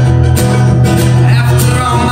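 Acoustic string trio playing an instrumental passage: strummed acoustic guitar, plucked mandolin and upright bass.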